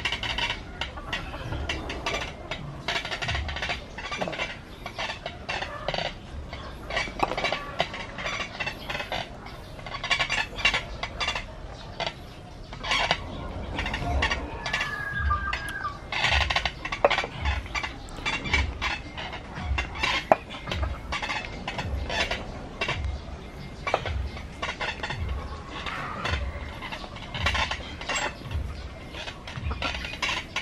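Repeated clicks and knocks from homemade concrete-plate dumbbells rattling on their bars as they are pressed, with a regular low thump about once a second in the second half. A bird calls once about halfway through.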